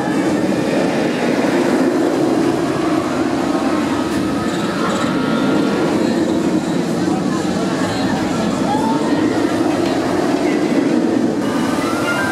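Bolliger & Mabillard steel roller coaster train (the Incredible Hulk) running along its track with a loud, steady rumble.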